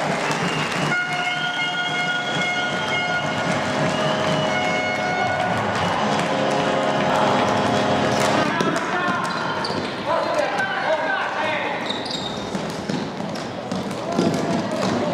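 A sustained horn-like chord of several steady tones sounds in a sports hall for about seven seconds, starting about a second in and shifting pitch a couple of times before it stops. After it, the hall holds voices and sharp knocks of the floorball and sticks on the court.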